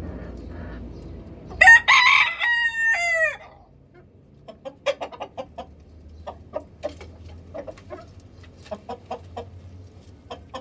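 A rooster crows once, loudly, about one and a half seconds in; the call lasts nearly two seconds and falls in pitch at the end. Hens then cluck in short, scattered notes through the rest.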